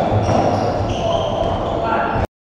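Court shoes squeaking on a wooden squash court floor, several drawn-out squeaks over a steady din in the court.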